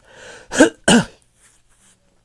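A man coughs twice in quick succession, the two coughs about a third of a second apart, after a short breath in.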